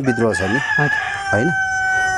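A rooster crowing: one long held call of about two seconds that sags slightly in pitch toward the end, over a man talking.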